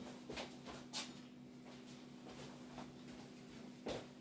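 Quiet kitchen room tone with a steady low hum and a few faint knocks of someone moving about, the loudest just before the end.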